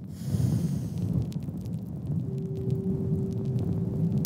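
Cinematic logo-reveal sound effect: a steady low rumble with scattered crackles, joined by a single held tone a little past two seconds in.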